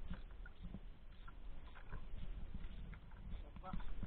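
Low rumbling wind and water noise aboard a small outrigger boat at sea, with a few faint scattered knocks.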